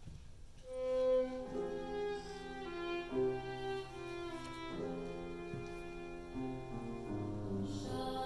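Violin playing a slow melody of held notes over lower sustained accompanying notes, starting about a second in.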